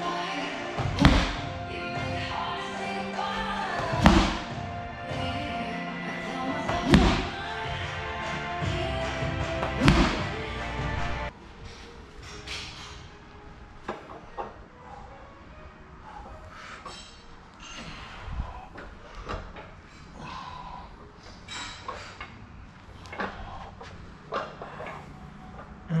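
A medicine ball hitting a rubber gym floor four times, about three seconds apart, each a heavy thud, over background music. About eleven seconds in, the music and thuds stop and only quieter room sound with a few light taps remains.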